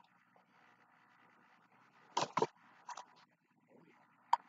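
Two quick pairs of short, sharp taps: one just after two seconds in, a fainter one about a second later, over faint room tone.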